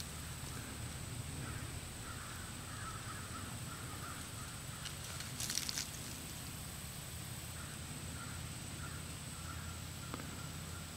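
Quiet outdoor background with faint, intermittent distant bird calls, and a brief rustle about five and a half seconds in.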